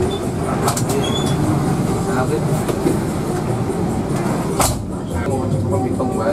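Diesel engine of a Hino RK8 bus running with the steady rumble and rattle of the cabin, heard from the front of the bus. A few sharp knocks of fittings, the loudest about four and a half seconds in.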